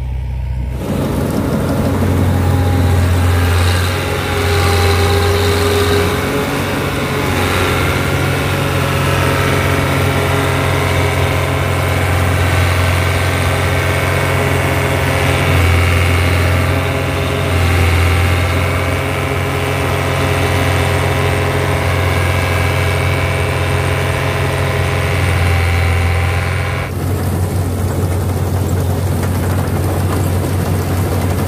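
Combine harvester running steadily while it cuts and threshes standing oats: a loud low engine hum with a layer of steady whining tones from the working machinery. Near the end the sound shifts and the high hiss drops away.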